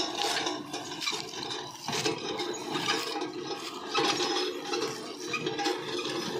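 Small electric farm vehicle driving over dry grass and leaves while towing a seeder: a steady motor hum under irregular rushing and scraping from the tines and wheels working through the dry ground cover.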